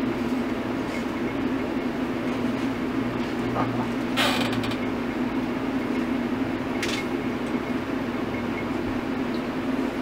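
Window air conditioner running with a steady low hum. Two brief noisy rustles cut in over it, about four and seven seconds in.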